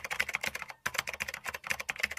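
Computer-keyboard typing sound effect: a fast run of key clicks with a brief break just under a second in, keeping time with text appearing on screen.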